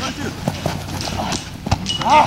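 Footfalls of several players running on a grass field during a flag football play: irregular quick thuds and clicks, with faint voices calling in the background.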